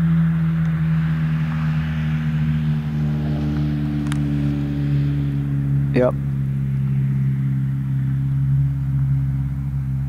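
Steady low drone of an aircraft overhead: a deep hum with several overtones whose pitch sinks slightly over the seconds.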